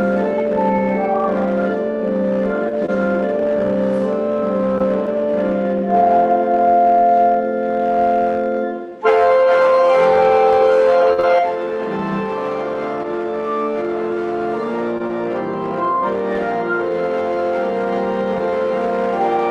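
Organ playing a hymn tune in sustained chords, with a short break about nine seconds in where one verse ends and the next begins.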